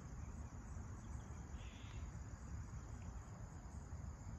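Steady, high-pitched insect chirring, with a low, uneven rumble underneath.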